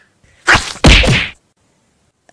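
Two loud whacks about a third of a second apart, the second longer and louder.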